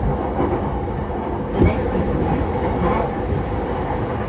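Steady running noise of a JR Yamanote Line commuter train heard from inside the car: wheels rumbling on the rails. A single short knock comes about one and a half seconds in.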